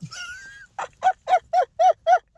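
A man's high-pitched laugh: a thin rising squeal at the start, then a run of short honking bursts, about four a second.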